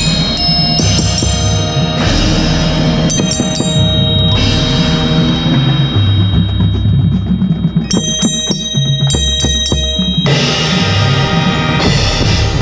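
Marching band music heard from within the front ensemble, with close flurries of struck metal: a mounted row of small cymbals and a Zildjian cymbal stack hit with sticks and left ringing, over drums and the band.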